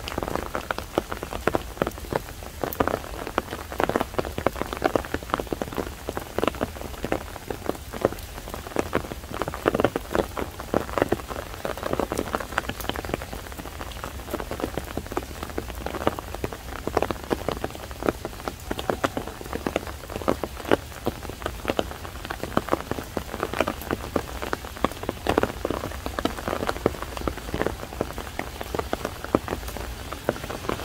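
Steady rain falling, a dense, irregular patter of many drops striking close by.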